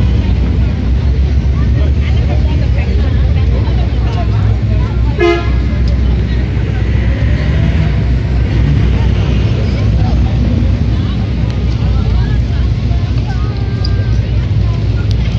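Busy city street: steady traffic rumble with crowd chatter, and a vehicle horn giving one short toot about five seconds in.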